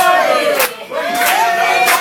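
A bar crowd singing together unaccompanied, holding two long notes with a short break a little under a second in, over evenly spaced claps.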